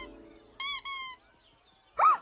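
Two short, high squeaky chirps in quick succession, each rising and falling in pitch, in an animated cartoon's soundtrack.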